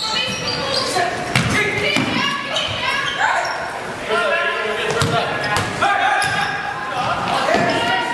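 Basketball game in a school gymnasium: a ball bouncing on the hardwood court in repeated sharp thuds, with players and spectators calling out.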